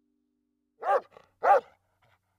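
A dog barking twice, about a second in and again half a second later, used as the sound logo of a closing title card.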